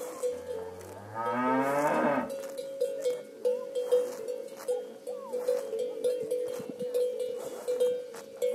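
A cow gives one long, low moo that rises in pitch during the first two seconds, over a cowbell clanking steadily as the cattle graze.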